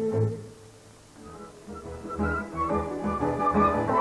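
Romanian folk music. The tail of the previous piece fades out in the first half second and the sound nearly drops away. About a second in, a folk orchestra of violins, double bass and accordion starts a new instrumental piece, with a pulsing bass beat and a melody entering about two seconds in.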